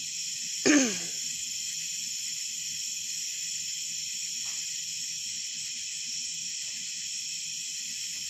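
Steady chorus of night insects such as crickets, shrill and unbroken. A person clears their throat once, just before a second in.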